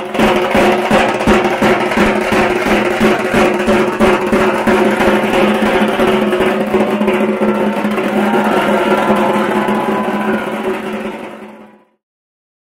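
Festive music driven by rapid, steady drumbeats over a sustained droning tone, fading out just before the end.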